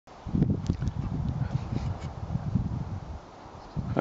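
Wind buffeting the camera microphone: an uneven low rumble that comes in gusts, with a few faint clicks, easing off near the end.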